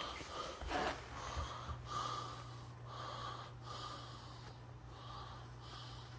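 A person breathing through the nose close to the microphone, short breaths repeating about once a second, over a steady low hum.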